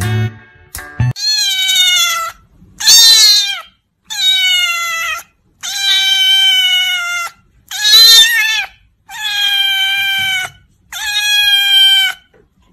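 A cat meowing loudly and repeatedly: seven long, drawn-out meows of about a second each, with short pauses between them. Music plays during the first second.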